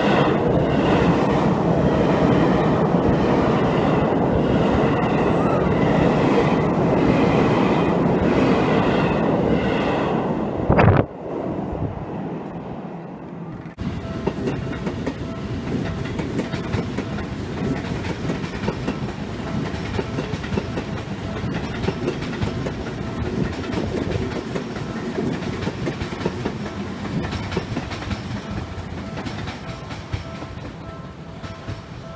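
Seibu 20000-series electric train passing close by, wheels clattering over the rails, with a level-crossing bell ringing over and over. About eleven seconds in the sound breaks off suddenly. It gives way to a quieter, steady rumble and hum of the train rolling slowly through a station yard.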